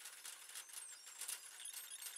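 Faint, scattered light clicks and taps of parts being handled on a workbench.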